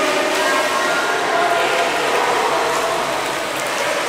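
Steady splashing and churning of water from a swimmer's breaststroke strokes and kicks, heard as a continuous wash of noise in a swimming pool hall.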